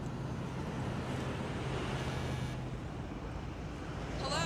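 A pickup truck driving up the street. Its engine hum and tyre noise grow louder toward the middle and then ease off.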